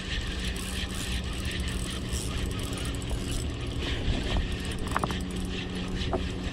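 Spinning fishing reel cranked steadily by its handle, its gears whirring with a fine ratchet-like clicking as line is wound in.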